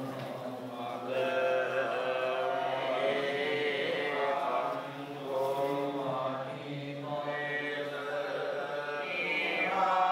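Buddhist monks chanting pirith, the Pali protective verses, in a steady drawn-out recitation with brief pauses between phrases.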